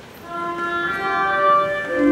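Church organ beginning to play: held single notes step upward from about a third of a second in, and a louder, fuller chord with a bass note comes in right at the end.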